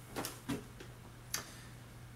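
A few faint clicks and taps over a low steady hum, the small movement noises of a person stretching and leaning back in a chair.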